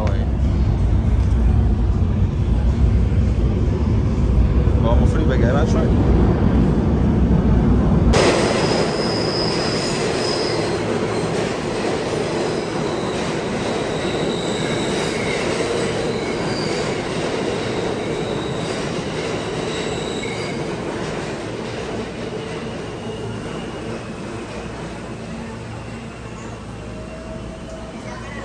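New York City subway train: a heavy low rumble, then from about eight seconds in, metal wheels squealing on the rails over a rushing noise that slowly fades away.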